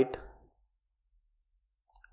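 The end of a man's spoken word fading out in the first half second, then near silence.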